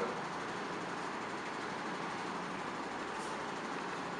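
Steady room noise: an even hiss with no distinct events.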